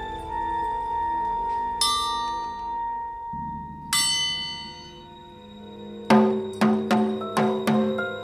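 Soundtrack music with held tones and two ringing bell strikes, then near the end a single-headed hand drum starts beating: five sharp strikes in a quick, uneven rhythm.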